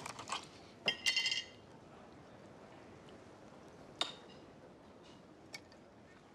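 Tableware clatter at a dining table: a short run of ringing clinks of hard items against china about a second in, then a single sharp knock near four seconds, over quiet room tone.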